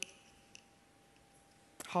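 A pause in speech: quiet room tone with a faint steady hum and one small click about half a second in, then a woman's voice starts again near the end.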